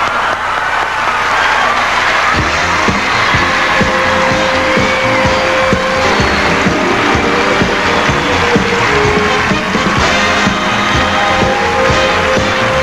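A large audience cheering and applauding loudly, with a live band striking up an up-tempo tune with a steady beat about two and a half seconds in.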